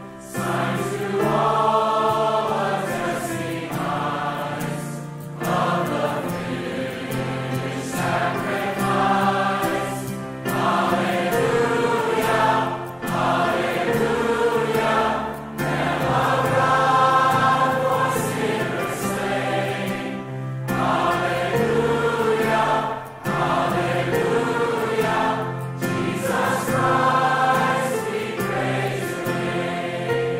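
A choir singing a hymn, its phrases broken by short pauses for breath every few seconds.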